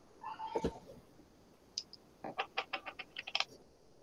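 Faint typing on a computer keyboard: a quick, uneven run of about ten sharp clicks in the second half, after a brief faint sound just after the start.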